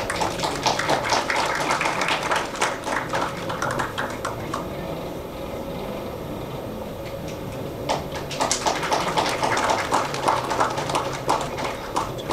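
Scattered hand clapping from a small audience, in two bursts with a quieter gap of a few seconds between them, as the wicks of a ceremonial brass oil lamp are lit.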